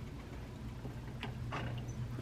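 A few light clicks of a metal spoon against a nonstick frying pan as warm sauce is spooned over salmon, a little over a second in, over a quiet, steady low hum.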